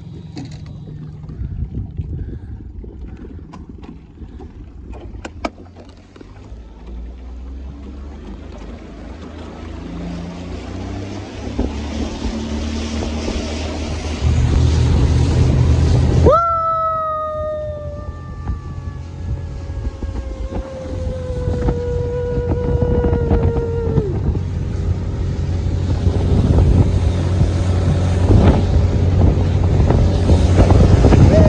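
Boat outboard motor running as a small fishing boat gets under way and picks up speed on a lake, with water rushing past the hull and wind on the microphone growing louder toward the end. About halfway through, a high whine starts abruptly and slowly falls in pitch for several seconds before stopping.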